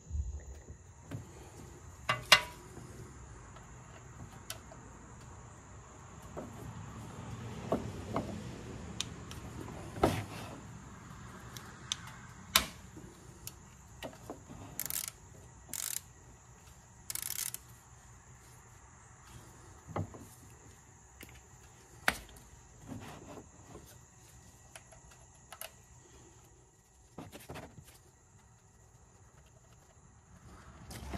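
Scattered metallic clicks and knocks of a ratchet and Torx socket being worked on a motorcycle's engine-oil drain bolt, then the bolt being handled as it is unscrewed by hand. A sharp click about two seconds in is the loudest, and there are a few short hissy bursts near the middle. A steady high insect chirr runs underneath.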